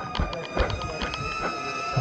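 Small quadcopter drone (DJI Neo) hovering and following, its propellers giving a steady high-pitched whine, with a few faint knocks.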